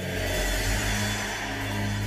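Soft background music of steady, held low tones, with no beat or change.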